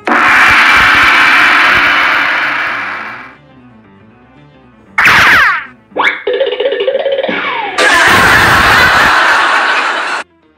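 Cartoon sound effects over soft background music: a long noisy burst for the first three seconds, a quick sliding sweep about five seconds in, a short pitched effect after it, and a second long noisy burst near the end.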